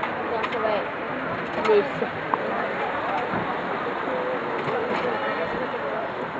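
Indistinct talking of several people, heard over a steady background noise.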